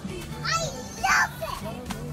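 Young children squealing while playing: two short, high-pitched squeals about half a second and a second in, over background music.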